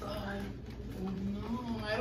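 A person's voice making low, wordless humming sounds in short stretches, reacting to the burn of the spicy noodles.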